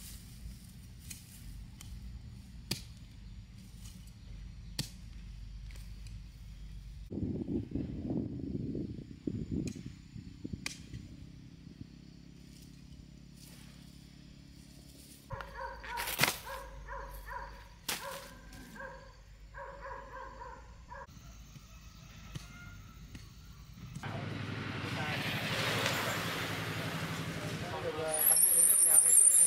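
Taro plants being pulled up by hand: soil and leaves rustling, with scattered sharp clicks and snaps of stalks. A rhythmic, pulsing pitched sound runs for several seconds in the middle, and a swelling rush of noise builds near the end.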